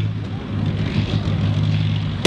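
Heavy vehicle engine running steadily with a deep, even hum.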